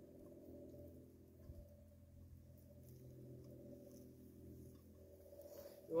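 Near silence: faint background with a low steady hum, and no clear crackle from the small fire.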